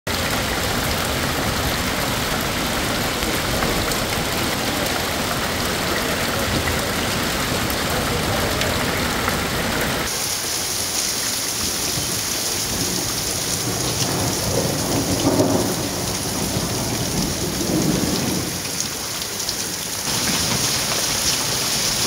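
A heavy hailstorm with rain: a dense, steady hiss and patter of hailstones pelting the pavement and parked cars. The character of the noise changes abruptly about halfway through and again near the end.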